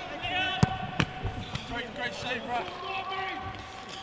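A football being kicked: two sharp thuds about half a second apart, about a second in, with players shouting and calling on the pitch throughout.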